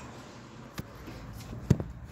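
A few light, sharp clicks over faint background noise, the loudest about three quarters of the way through, like handling noise as a phone is moved about in an engine bay.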